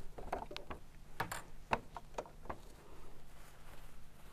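Hands handling fabric at a stopped overlocker: a scatter of small clicks and light rustles, thickest in the first two and a half seconds, over a faint steady hum.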